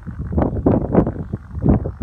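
Wind buffeting the microphone in uneven gusts, a loud low rumble.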